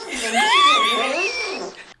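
Laughter with a high-pitched, wavering wail from a voice rising and falling over it for about a second.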